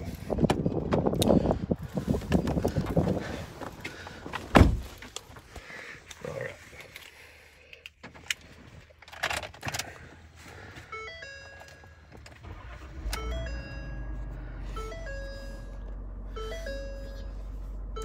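Pickup truck door handled and opened, with rustling as someone climbs into the cab and one loud thunk about four and a half seconds in. From about eleven seconds a run of short electronic tones changing pitch step by step sounds, and about two seconds later a low steady rumble sets in as the 2020 Ford F-550's engine starts and idles.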